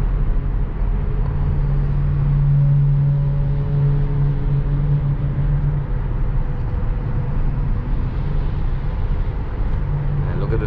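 Road and tyre noise inside a Tesla Model S Plaid's cabin at highway speed: a steady rumble with a low hum that is strongest in the first half.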